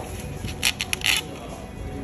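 A handful of short, sharp clinks in quick succession, between about half a second and just over a second in, over faint background music.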